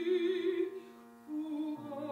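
Operatic soprano singing with wide vibrato over grand piano accompaniment; her held note ends about two-thirds of a second in, the piano carries a short quiet gap, and she comes back in near the end.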